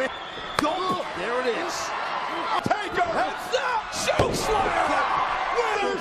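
Heavy thuds of wrestlers' bodies slamming onto a wrestling ring's canvas: single hits about half a second and two and a half seconds in, and the heaviest, deepest impact about four seconds in. Shouting voices run throughout.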